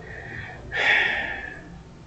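A single audible breath from a man, about a second long, starting under a second in and fading away.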